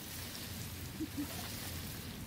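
Sound effect of falling water, like steady rain: an even hiss with no distinct drops or pauses.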